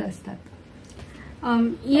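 Women speaking: one voice finishes a sentence, a pause of about a second, then a second woman starts talking about one and a half seconds in.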